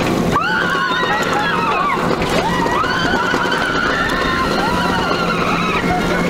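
Several riders screaming in long, overlapping rising-and-falling cries over the steady rumble of a steel roller coaster train running through its track.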